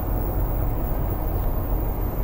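Steady low rumble of a car's idling engine heard inside the cabin.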